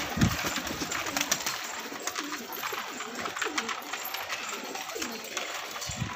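A flock of Indian high flyer pigeons cooing steadily, many low overlapping coos, over a dense patter of small clicks from beaks pecking grain in the feed trays. A brief low thump sounds just at the start.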